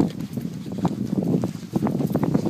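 Footsteps on dry, gravelly ground: a quick, irregular run of short steps, the loudest right at the start.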